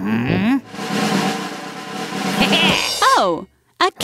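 A snare drum roll sound effect, opened by a short rising pitched sound and closed about three seconds in by a short falling cartoon-like vocal sound.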